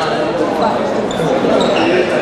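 Hubbub of many people talking at once in a large sports hall, with a few short high squeaks over the voices.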